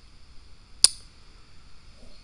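A single sharp click just under a second in, over a faint steady hiss.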